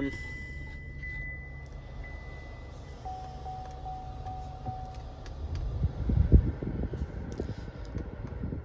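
Cadillac XT6's 3.6-litre V6 idling just after start-up, a steady low hum, with a run of short electronic chimes from the car for about two seconds near the middle. A few dull knocks follow, the loudest of them about six seconds in.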